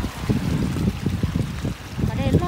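Gusty wind rumbling on the microphone over lapping lake water.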